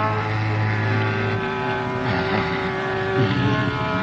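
Carnatic classical concert music: a note held over a steady drone, then an ornamented melodic passage with sliding, wavering pitch.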